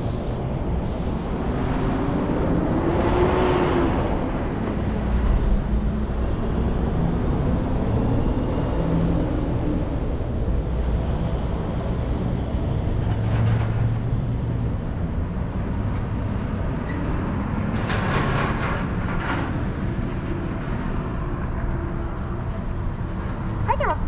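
A car's engine idling with a steady low rumble, the car pulling forward near the end.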